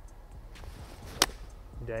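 A golf iron striking a ball off the tee: a single sharp click about a second in. The golfer himself calls the strike a duff.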